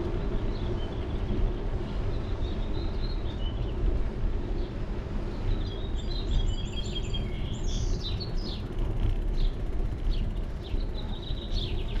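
Steady low rumble of wind and road noise picked up on a bicycle-mounted action camera, with songbirds chirping overhead: a few scattered chirps at first, a quick run of notes about halfway through, and more chirps near the end.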